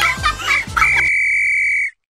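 Upbeat background music with a steady beat and short chirpy high notes, which gives way about a second in to a single held high beep that cuts off suddenly into silence.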